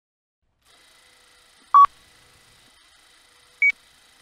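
Two short electronic beeps about two seconds apart, the second higher in pitch, over a faint steady background hum.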